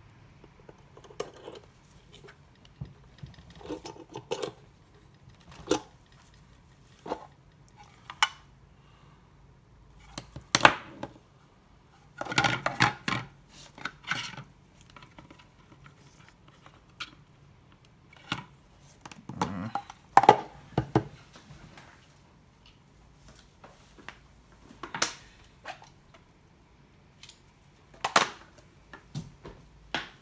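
Intermittent clicks, knocks and light rattles of black plastic enclosure halves and small tools being handled and set down on a workbench cutting mat, with a denser run of knocks about halfway through and a sharp knock near the end.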